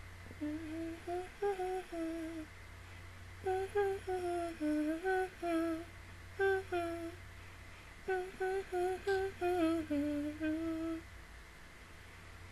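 A woman humming a melody in three short phrases, with pauses between them.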